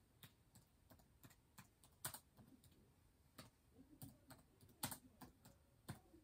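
Faint, irregular clicks and taps of typing on a keyboard, about twenty scattered keystrokes with uneven gaps.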